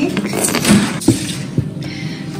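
Paper bag and cardboard cake box being handled and opened: rustling with a few short knocks from the box.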